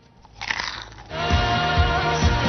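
A short crunching bite about half a second in. Just after a second in, music with a steady beat starts.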